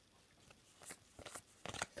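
Faint rustles and light clicks of Pokémon trading cards being handled and slid in the hands, a few in the second half and quickening near the end.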